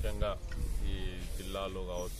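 A man speaking, with some long drawn-out vowels, over a steady low rumble.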